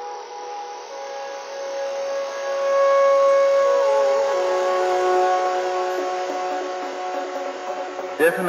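Beatless breakdown of psytrance music: sustained electronic tones held with no kick drum or bass. About halfway through, one tone glides down in pitch, and the music swells a little louder around three seconds in.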